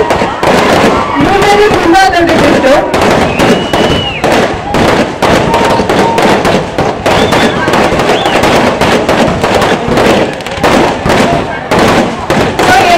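A dense, continuous run of sharp pops and cracks over shouting voices, with a brief high whistle about three and a half seconds in.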